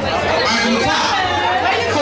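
Crowd chatter: several people talking at once in a large room, no single clear voice.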